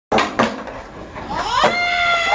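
Intro sound effect: two sharp knocks in the first half second, then a pitched sound that glides upward and settles into a held tone near the end.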